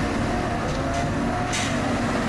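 Mini excavator's diesel engine running steadily under load, with a short burst of higher-pitched noise about one and a half seconds in.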